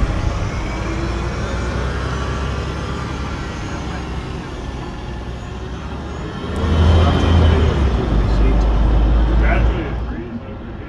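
Street traffic: a motor vehicle's engine running with a steady low rumble, growing louder about two-thirds of the way in as it comes close.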